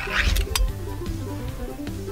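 Background music playing, with a brief tearing, crackling sound and a couple of clicks in the first half-second as a pull-tab lid is peeled off a small metal can.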